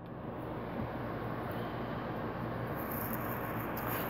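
Low, steady background hiss with no distinct knocks or clicks.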